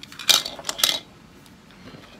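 Hard plastic toy pieces clicking and clacking together as they are handled and fitted: a few quick clacks in the first second, then one faint tick near the end.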